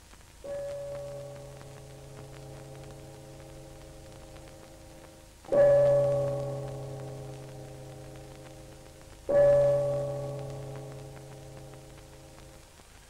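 A large church bell tolling: three slow strikes, the first softer than the other two, each left to ring on and fade away.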